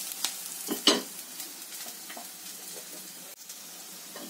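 Dried red chillies, onion and spices sizzling in hot oil in an iron kadai as a perforated steel spatula stirs them, with a sharp knock of the spatula about a second in.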